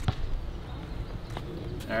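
Low, steady rumble of wind on the microphone, with two faint clicks, one at the start and one about a second and a half in. A man's voice begins just before the end.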